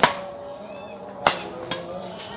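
Badminton rackets hitting the shuttlecock during a doubles rally: two sharp cracks about a second and a quarter apart, the first right at the start.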